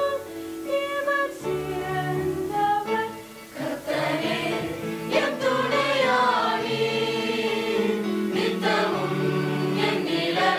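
Mixed choir of men and women singing a Tamil Christian song. After a brief dip just past three seconds, the voices come back fuller and louder.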